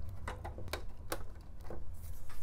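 A few short, sharp clicks and taps as a VGA cable's plug is fitted to a graphics card's bracket, over a steady low hum from the running power supply.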